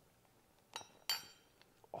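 Two light clinks about a third of a second apart, a metal spoon against a small ceramic soup pot.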